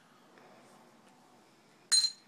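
Quiet room tone, then near the end a single sharp clink from a jewelry ring being handled, with a short ringing tail.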